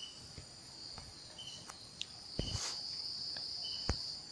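Crickets singing steadily in the background, a continuous high trill with short repeated chirps, broken by a few sharp clicks.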